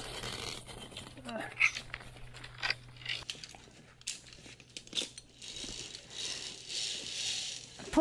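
Handling noise from a body-worn action camera and zip-line gear: scattered clicks and rustling, with faint voices in the background.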